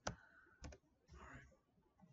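Quiet clicks from a computer keyboard and mouse: two sharp clicks about two-thirds of a second apart, then a softer, brief clicking rattle.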